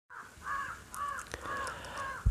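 A bird calling over and over, five calls about half a second apart.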